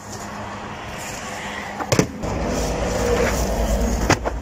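Handling noise from cardboard boxes being opened and searched inside a truck trailer, with a sharp click about two seconds in and a low rumble after it.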